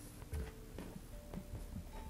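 Faint handling noise: soft rustles and light taps of cotton cord being pulled and settled against a wooden tabletop as a macramé knot is tightened.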